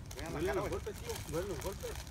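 Men's voices calling out, with no clear words, over a steady low background hum.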